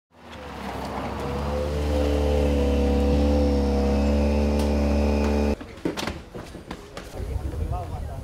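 Citroën DS3 WRC rally car's 1.6-litre turbocharged four-cylinder engine running at low, steady revs, growing louder over the first two seconds. It cuts off suddenly about five and a half seconds in, giving way to scattered knocks and clicks.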